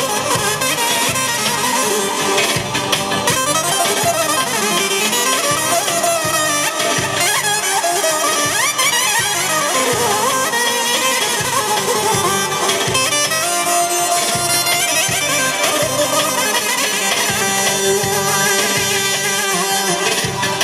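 Traditional folk dance music, led by a loud, reedy wind instrument playing a gliding melody over a steady drum beat.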